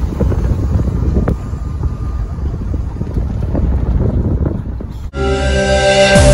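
Low rumble from a Union Pacific diesel locomotive close by, heavily buffeted by wind on the microphone. About five seconds in it cuts off abruptly and electronic music begins.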